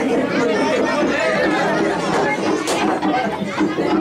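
Several people talking over one another at close range, a steady babble of voices with no single clear speaker, and one sharp click a little past the middle.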